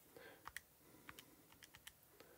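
Near silence with faint, irregular light clicks, roughly half a dozen a second.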